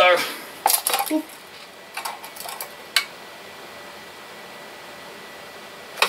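Plastic road barricade lamps being handled on a desk: a few clattering knocks and clicks in the first second or so, more small handling sounds around two seconds in, and one sharp click about three seconds in.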